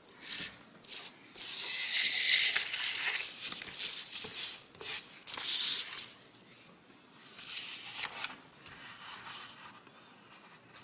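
Sheet of drawing paper rustling and sliding on a desk as it is handled and turned around, in several bursts, loudest in the first few seconds, with a few light clicks at the start.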